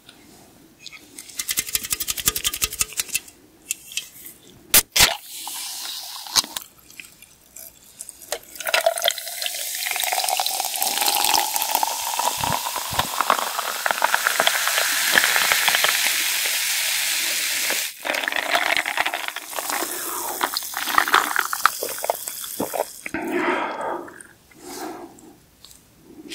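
Schweppes bitter lemon poured from a can into a glass jar: a long, steady fizzing pour whose pitch rises as the jar fills, tailing off into fizzing. Before it come a run of rapid clicks and a sharp snap about five seconds in.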